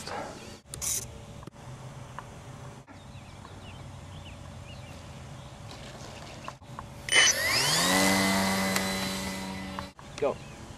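The brushless electric motor and propeller of an RC HobbyZone Super Cub spin up about seven seconds in: a whine that rises in pitch, then holds steady and slowly fades. Before it there is only a low, quiet background with faint chirps, broken by several abrupt edit cuts.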